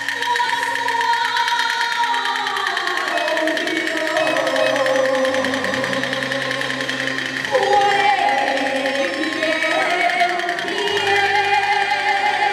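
Taiwanese opera (gezaixi) music: a sustained, wavering sung line over instrumental accompaniment, growing louder about seven and a half seconds in.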